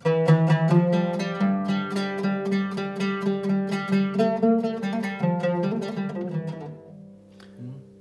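Solo oud played with a plectrum: a quick run of plucked notes in a phrase that opens on the Sika trichord, then slows and fades out about seven seconds in, leaving the last notes ringing.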